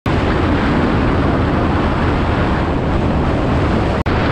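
Steady, loud rush of wind and road noise from a vehicle moving along a paved road, with no clear engine note standing out.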